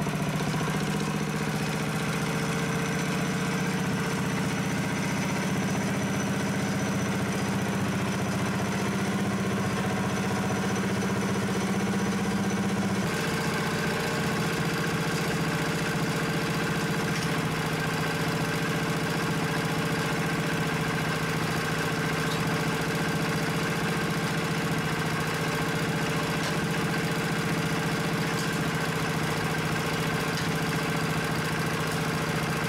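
Predator single-cylinder small engine running steadily, driving through a torque converter and chain. About 13 seconds in its note shifts slightly lower and changes character.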